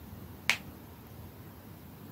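A single sharp click about half a second in, over faint room noise.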